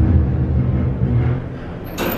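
Elevator cab moving, a low steady rumble with a faint hum that eases off about one and a half seconds in.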